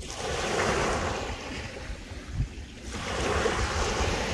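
Small waves breaking and washing up a sandy beach: a steady rushing that eases off in the middle and builds again near the end. Wind rumbles on the microphone.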